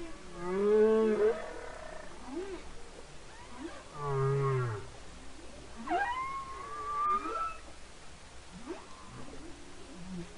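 Humpback whale song: a series of separate moaning calls, each gliding up or down in pitch, with short gaps between them. A low falling moan comes about four seconds in and a rising whoop about two seconds later.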